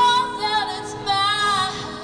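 A woman singing live into a microphone, accompanying herself on acoustic guitar. Two long sung notes, the second wavering with vibrato.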